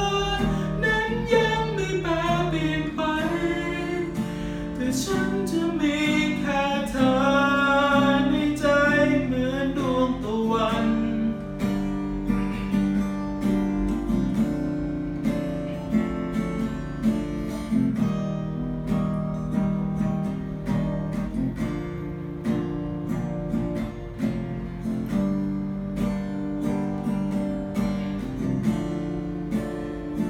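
A man singing a slow song over acoustic guitar; his voice stops about eleven seconds in and the guitar carries on alone, strummed and plucked.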